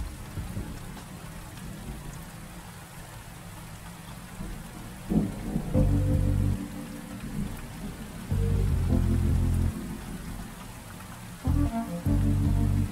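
Steady rain falling, with music laid over it: deep, low sustained notes come in about six, eight and a half and eleven and a half seconds in.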